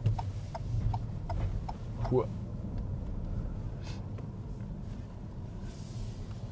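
Car interior noise while driving: a steady low engine and road rumble, with a run of light, evenly spaced ticks, about three a second, through the first two seconds.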